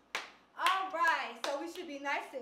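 A sharp hand clap just after the start, then the woman's high, lively voice calling out, its pitch swooping up and down.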